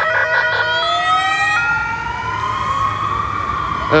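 Emergency vehicle siren on the street: a brief choppy stretch of high tones, then a slow wail rising in pitch over about three seconds, over a low rumble of traffic.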